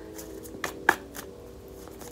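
A deck of tarot cards being shuffled by hand: several separate soft card slaps and flicks, the sharpest just before a second in.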